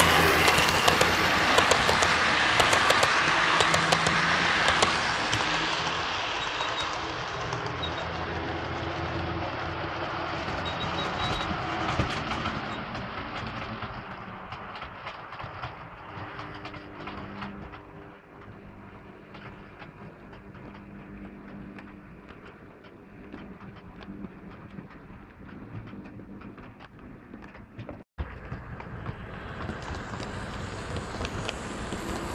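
OO gauge model trains running on the layout: wheels clicking and rattling over the track joints, with a motor hum. It is loudest in the first few seconds, then fades gradually, and cuts out abruptly near the end.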